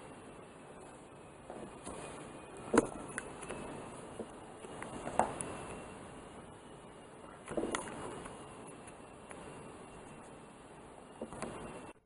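Quiet room noise with a few brief, light knocks and clicks, the sharpest about three seconds in.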